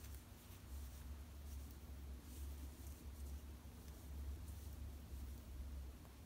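Faint rustling and light ticks of a steel crochet hook being worked through thin cotton yarn, over a low steady hum.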